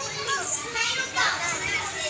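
Children shouting and chattering at play, several voices overlapping.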